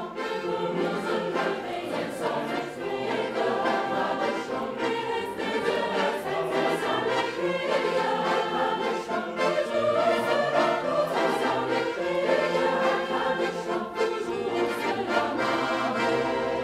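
A large choir singing, with sustained, full harmonies that carry on without a break.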